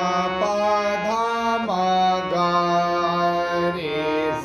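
Harmonium playing the sthayi melody of a sargam geet in Raag Khamaj, held reedy notes moving step by step, with a voice singing along and gliding between the notes.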